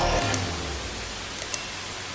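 The tail of an outro music jingle fades out into a steady hiss. About one and a half seconds in come two quick clicks, the mouse-click effects of a subscribe-button animation.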